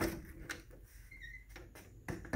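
A door being opened: a sharp click at the start and another about half a second later, then low handling noise.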